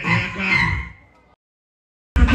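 A loud, rough voice chanting into a phone microphone over a low rumble, fading out just over a second in, then dead silence.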